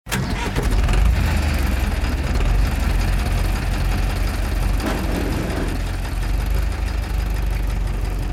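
An engine running steadily with a low rumble, starting abruptly at the outset.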